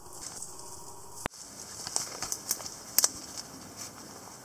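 Footsteps on a mulched garden path, a run of irregular crackling steps with the loudest near the end, and one sharp click a little over a second in.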